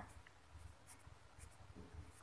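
Faint scratching of a pen writing on lined paper, in a few short strokes.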